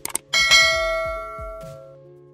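A quick mouse click, then a bright notification-bell chime that rings out and fades over about a second and a half, over soft background music.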